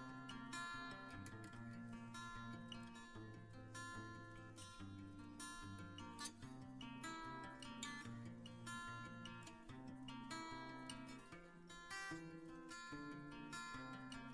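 Quiet background music of plucked acoustic guitar, many quick notes over a sustained lower line.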